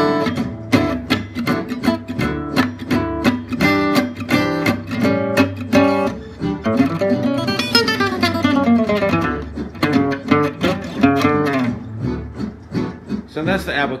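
Gypsy jazz acoustic guitar played with a pick, looping an A9 arpeggio lick that resolves to D major (a five-to-one movement): fast runs of single picked notes climbing and falling.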